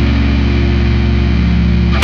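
Heavy metal music: a low distorted guitar chord held and ringing steadily, with no drum hits.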